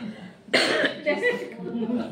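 People talking in a small room, with a short, sharp burst from a voice about half a second in.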